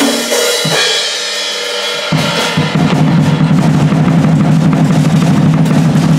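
Acoustic drum kit played hard: a cymbal rings out at first, then about two seconds in a fast, continuous run of drum strokes with bass drum and snare starts and keeps going.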